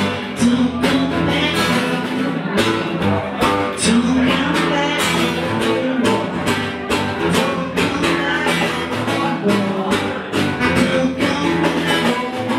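A live band playing an instrumental passage: acoustic guitar strumming over a steady drum beat, with no lead vocal.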